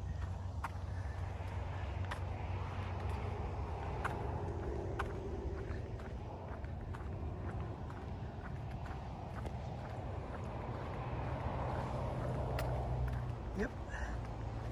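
A hiker's footsteps on a concrete bridge deck, over a steady hum of highway traffic below that swells near the end as vehicles pass.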